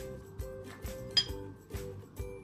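A metal spoon clinks once against a ceramic bowl about a second in, a sharp ringing click, over background music with a steady beat.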